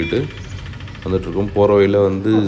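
A person's voice speaking over a steady low engine hum of road traffic. The hum drops out near the end.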